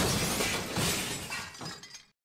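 Sound effect of glass shattering: a crash of breaking glass that fades away over about two seconds, with a couple of smaller rattles of falling pieces partway through and near the end.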